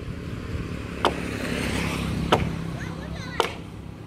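Three sharp chops of a long-handled hewing tool biting into a wooden log, a little over a second apart. A motorcycle passes on the road at the same time, its engine swelling and fading through the middle.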